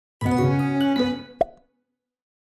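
Short musical intro sting: a few held notes that change pitch and fade within about a second, followed by one sharp pop.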